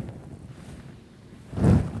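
Wind rumbling on the microphone over faint outdoor background noise, with a man's voice starting again near the end.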